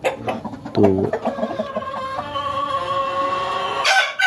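Domestic chickens clucking, then a long drawn-out call held from about a second and a half in. A sharp click sounds near the end.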